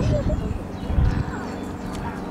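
Mute swan cygnets giving short peeping calls, over wind rumbling on the microphone that is loudest about a second in.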